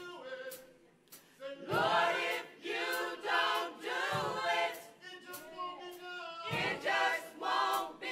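Church choir singing a gospel song in phrases that swell and fall, with sharp percussive taps sounding through it.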